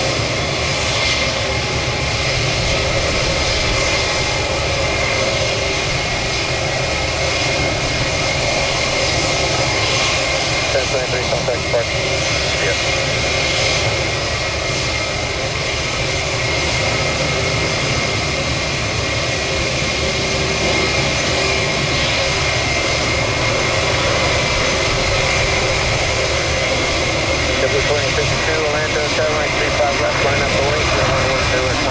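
Airbus A330 jet airliner on final approach, its engines a steady noise that holds at one level throughout.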